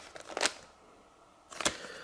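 Plastic and card retail packaging handled and set down in a cardboard box: a few short crinkles and clicks near the start and about half a second in, then a single click about 1.6 s in.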